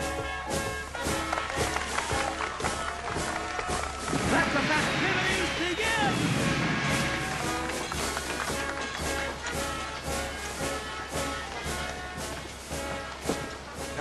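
Lively festival band music with a steady beat and sustained brass-like notes. A louder burst of crowd noise rises over it from about four seconds in and lasts a few seconds.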